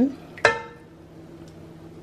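A single clink of a spoon against a glass baking dish about half a second in, ringing briefly, over a faint steady low hum.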